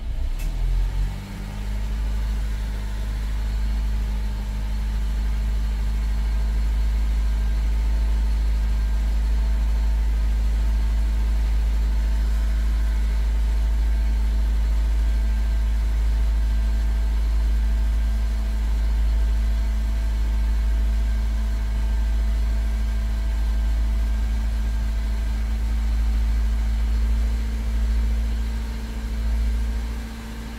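2000 Honda Civic EX's 1.6-litre four-cylinder engine revved up by the accelerator about a second in, then held at a steady raised speed to warm it up, easing back at the very end.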